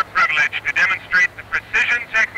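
A man's voice talking over a public-address loudspeaker, thin and tinny with almost no low end.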